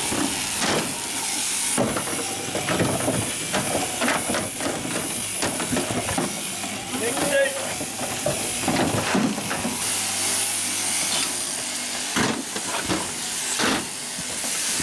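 Busy work noise on a sheep crutching trailer: a steady hiss of shearing handpieces running under repeated knocks and clatter as sheep are handled in the cradles.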